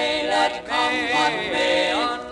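Male gospel quartet singing a hymn in several voice parts, with the sung phrases breaking and re-entering.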